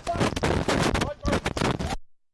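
Indistinct shouted voices from the field, mixed with loud, rough crackling noise.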